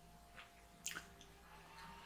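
Near silence: room tone with faint electrical hum and a couple of faint clicks about a second in.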